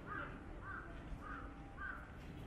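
A crow cawing: four short, arched calls about half a second apart, over faint street noise.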